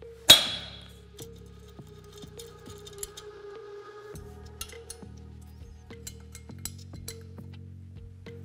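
Background music, with one sharp metallic clink that rings briefly about a third of a second in, then faint scattered light clicks of a hand tool working on an aluminium scooter cylinder head.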